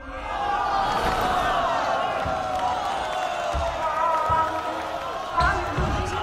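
Several voices chattering at once, no words clear, with a few dull thumps scattered through, two close together near the end.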